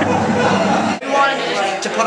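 Live rock band playing, with drums and electric guitar, cut off suddenly about a second in. A young man's talking follows.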